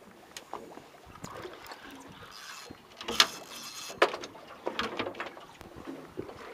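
Scattered clicks and knocks from a spinning reel and rod being worked by hand while a fish is played, over faint wind and water noise. The sharpest click comes about three seconds in, another about a second later.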